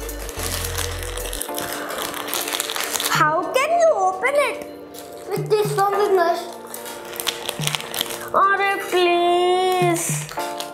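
Crinkling of thin plastic Gems sweet packets being worked open by hand, densest in the first few seconds, over background music and a child's voice.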